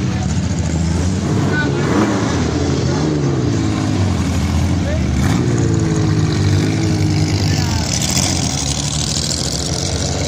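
A road vehicle's engine running at driving speed, heard from inside the cab, its pitch rising and falling a few times as it drives.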